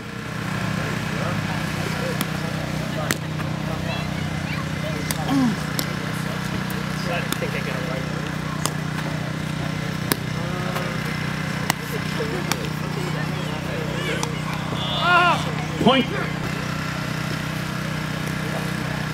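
A footbag kicked back and forth in a net rally: short sharp taps at uneven intervals, about one every second or so. Under them runs a steady low hum, and a few brief calls rise near the end.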